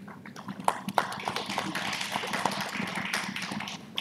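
A small audience clapping, starting with a few scattered claps about half a second in, building to steady applause and stopping near the end.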